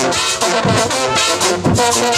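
A brass marching band playing a tune: trumpets and trombones over a sousaphone bass line, with bass drum beats.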